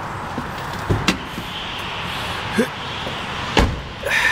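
Car door being opened and then shut with a thud, the shut being the loudest knock near the end, with a few lighter knocks of handling before it over a steady background rumble.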